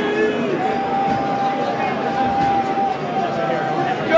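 Football stadium crowd noise, with fans singing a long held note over the general din.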